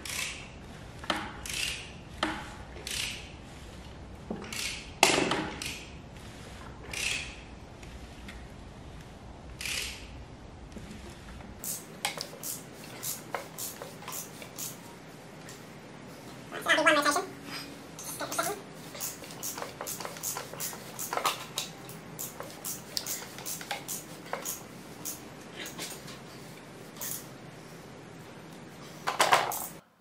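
Ratchet wrench turning the Audi R8's 4.2 V8 over by hand at the crankshaft, two full revolutions to check the cam timing: scattered metallic clicks and knocks, coming more often from about halfway through.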